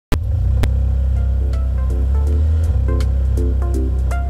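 Background music with a deep sustained bass, short repeated chord stabs and crisp percussion hits keeping a steady beat, starting abruptly right at the beginning.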